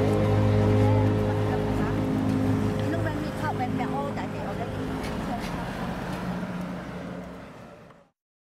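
Street ambience of passing traffic and people's voices, with a music track dying away beneath it; the whole fades out to silence at the end.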